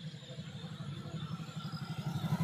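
Motorcycle engine idling with a rapid, even low pulse, with crickets chirping faintly behind it.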